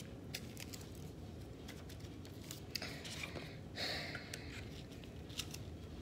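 Faint rustling and scraping of a paper instruction booklet and a cardboard box being handled, with scattered small clicks and a short paper slide about four seconds in.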